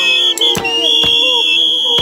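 A group of people singing together, with a shrill, sustained whistle held over the singing and sharp handclaps about twice a second.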